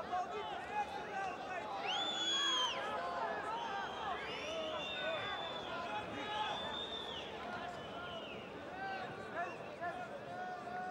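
Arena crowd noise: many voices shouting and chattering at once, with several long high whistles from spectators a couple of seconds in and again mid-way.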